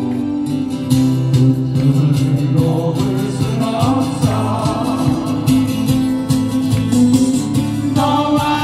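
Live amplified music: an acoustic guitar played with singers on microphones, going through a PA speaker.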